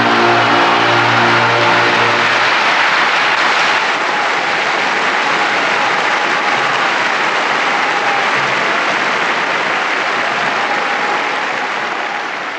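Audience applauding steadily at the end of the cabaletta, starting over the orchestra's held final chord, which dies away about two and a half seconds in.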